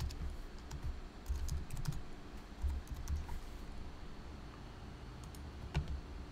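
Computer keyboard typing: a short run of keystrokes over the first three seconds or so, then a pause, with one more click near the end.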